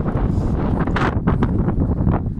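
Wind buffeting the microphone, a loud, uneven low rumble.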